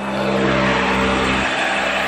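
A car driving past close by on the road, a steady engine and tyre rumble whose lowest part drops away about one and a half seconds in as it goes by.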